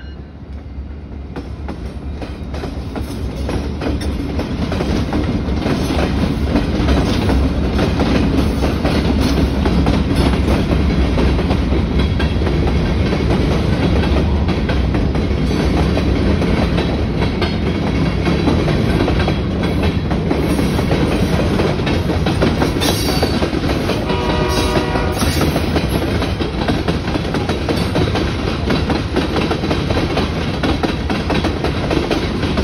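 Diesel freight train passing close by: the lead locomotive's engine grows louder over the first few seconds as it goes by, then a long string of freight cars, tank cars among them, rolls past with a steady clatter of wheels over the rail joints.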